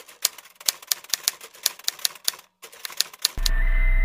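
Typewriter-style typing sound effect: a rapid, irregular run of sharp key clicks with a short break about two and a half seconds in, the kind laid under on-screen text being typed letter by letter. About three and a half seconds in, it gives way to electronic music: a loud steady low hum with high held tones.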